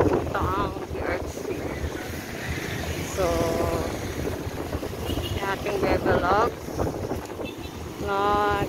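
Outdoor street noise: wind buffeting the microphone over a steady rumble of traffic on a wet road, with a few brief snatches of voice.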